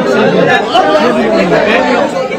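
A crowd of men talking over one another, several voices overlapping into chatter.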